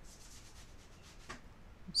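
Faint rubbing, scratchy noise over low background hiss.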